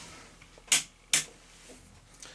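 Two short clicks, a little under half a second apart, over quiet room tone.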